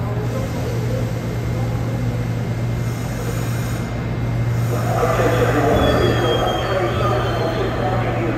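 R68 subway train starting to pull out of the station: a steady low hum, then a rising rumble and clatter of wheels and motors from about five seconds in as it gets moving, with a faint high whine.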